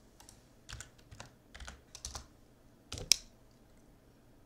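Computer keyboard typing: irregular, fairly faint key clicks, with a louder pair of clacks about three seconds in.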